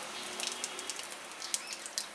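Hot refined oil sizzling in a kadai as whole cumin seeds, a dried red chilli and a bay leaf fry in it for a tempering, with a steady hiss and scattered crackling pops from the spices.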